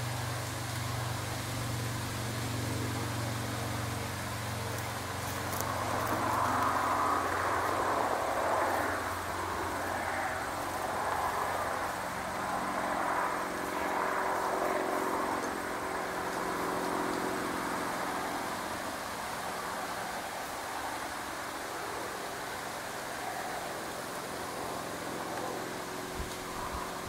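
Road traffic: a low engine hum fades over the first few seconds, then a vehicle's noise swells and fades again through the middle.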